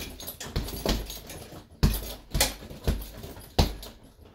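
Bare-knuckle punches landing on a hanging heavy bag: about six sharp thumps at uneven spacing. The bag's chain jingles with the hits, because the bag hangs loose at the top.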